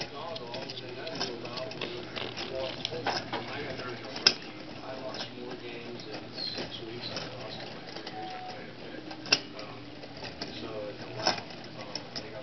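Gordon Bradt brass wire kinetic clock running, its mechanism giving faint ticks and a few sharper clicks about four, nine and eleven seconds in. Faint voices and a low hum in the background.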